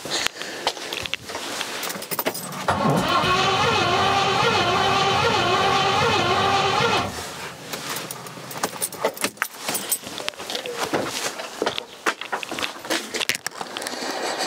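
The starter motor cranks the Rover 4.6-litre V8 for about four seconds with one spark plug out. Its whine wavers up and down as the engine turns over without firing, a non-start that the owner puts down to fuel not reaching the cylinders. Clicks and knocks of handling come before and after the cranking.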